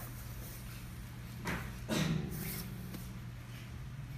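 Water poured from a plastic cup splashing into an empty clear acrylic box, in two short rushes about a second and a half and two seconds in, over a steady low hum.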